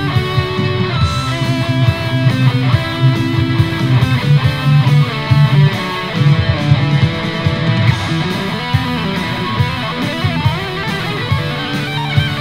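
Electric guitar playing an improvised lead in the E minor scale over a heavy metal backing track of E5, D5 and C5 power chords. It plays quick single-note lines with some held, wavering notes over a steady low rhythm.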